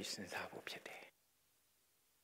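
A man speaking softly for about a second, then a pause in near silence.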